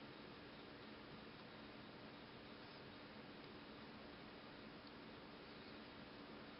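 Near silence: room tone, a faint steady hiss with a low hum.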